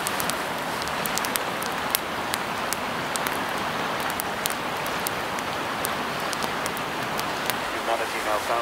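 Wood campfire crackling, with frequent sharp, irregular pops over a steady hiss.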